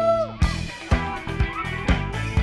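Live band playing a disco-funk rock song: drum kit beat about two hits a second under electric guitars and bass. A held high note slides down and ends shortly after the start.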